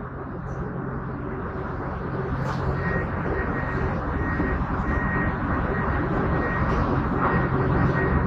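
Inside an airport apron shuttle bus: the bus's steady low engine drone, growing slowly louder.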